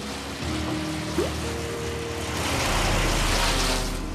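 Wood chipper running and shredding pine branches: a dense rushing noise that grows louder about halfway through, with a low rumble joining it. Background music with sustained notes plays underneath.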